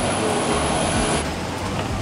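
Steady rushing hum of a parked airliner's air systems heard from the boarding door and aisle, with a thin high whine that stops a little past halfway.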